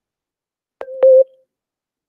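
A short electronic beep from the call software, about a second in: two sharp clicks and a single steady mid-pitched tone lasting about half a second.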